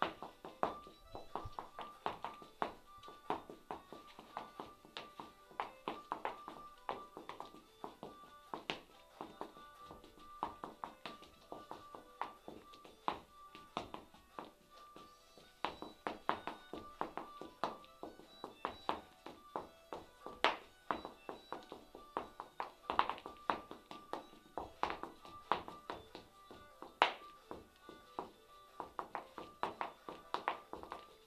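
Irish step dancing: a dense, quick run of taps and thuds from the dancer's feet striking the floor, over recorded dance music.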